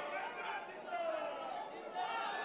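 Faint chatter of several voices in the background.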